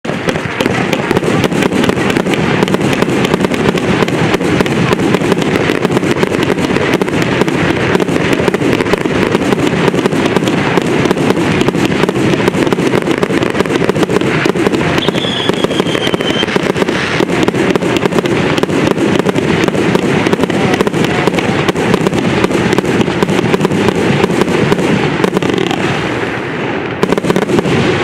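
Multi-shot firework cake firing shot after shot, a loud, dense run of rapid pops and bangs that keeps going almost without a break and eases slightly near the end.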